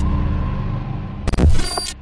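Intro sting sound design: a low rumbling drone with a sharp hit at the start and a louder cluster of hits about a second and a half in, then fading out.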